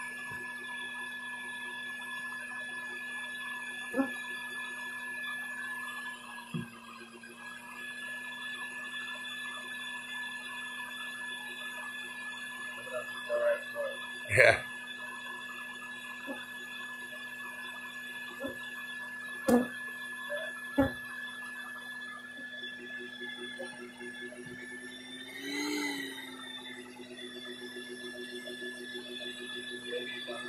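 Live-bee removal vacuum running with a steady hum, its suction turned down low for collecting bees. A few sharp clicks come through as the hose is worked, and the hum wavers briefly about six seconds in.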